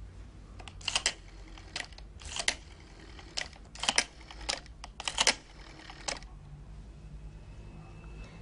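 Rotary telephone being dialled: a run of sharp clicks in short clusters over about six seconds, as the dial is turned and released for each digit of the number.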